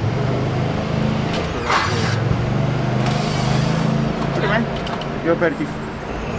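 A motor vehicle's engine running close by: a low, steady hum that fades out about four and a half seconds in.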